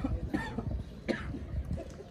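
A person coughing twice, short and sharp, about a third of a second and a second in, over low steady background noise.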